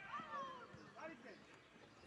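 Faint, distant shouted voices, a few drawn-out calls in the first second, fading to quieter background afterwards.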